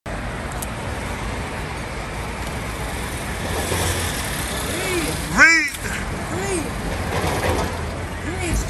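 Steady city street traffic noise with people's voices, and one loud shout about five and a half seconds in.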